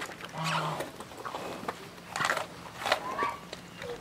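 Brown bear cub eating a piece of food off concrete: short bursts of crunching, chewing and snuffling, about three of them.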